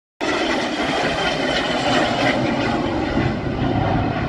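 Business jet's engines at takeoff power as it lifts off the runway: a steady, loud noise with a faint whine, cutting in abruptly just after the start.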